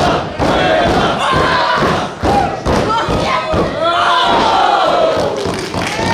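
Repeated thuds of wrestlers hitting the ring canvas, mixed with shouts and yells from the wrestlers and the ringside crowd. A long falling shout comes about four seconds in.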